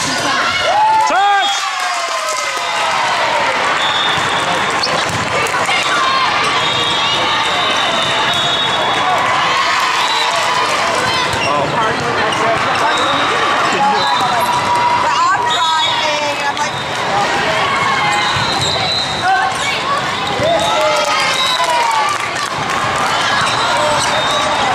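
Indoor volleyball play: the ball is struck by hands and smacks the court floor repeatedly, with short high sneaker squeaks on the hardwood and sport-court surface. Players and spectators shout throughout.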